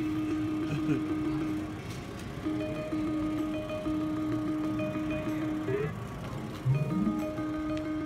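Electronic slot-machine music: steady held tones that break off and resume, with a few short rising pitch sweeps.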